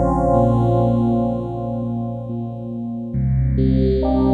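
Yamaha DX7IID FM synthesizer playing a dry, mono patch: held notes with a slight waver. A new lower note comes in about three seconds in, followed shortly by a higher one.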